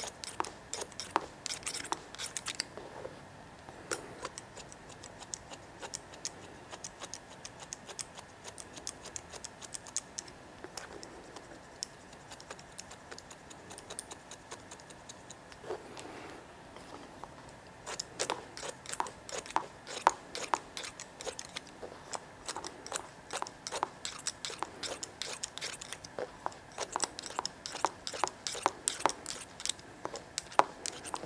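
Hairdressing shears snipping wet hair in scissor-over-comb cutting: quick runs of short, crisp snips. They thin out in the middle, then come thick and fast again in the last third.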